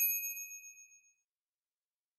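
A single bright chime sting on the commercial's end logo: one ding with several high ringing tones, fading out within about a second, then dead silence.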